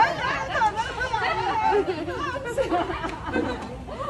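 Several people chattering at once in overlapping conversation.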